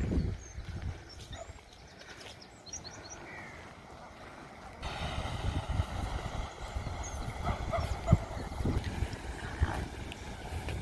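Outdoor coastal ambience with wind gusting on the microphone in low rumbles. A few faint high chirps come in the first few seconds, and about five seconds in the sound jumps abruptly to louder wind buffeting.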